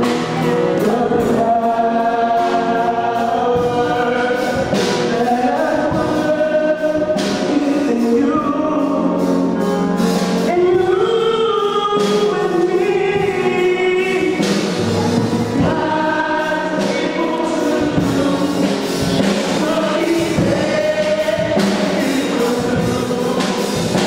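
Choir singing gospel music.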